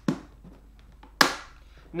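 Snap-lock latches of a clear plastic storage container clicking shut as the lid is sealed: two sharp snaps about a second apart, the second louder.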